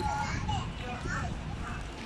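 Children's voices calling and chattering at a distance during play, over a steady low rumble.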